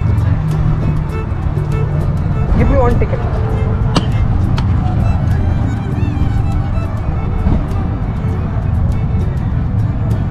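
Wind buffeting a handheld camera's microphone: a loud, steady low rumble, with voices in the background.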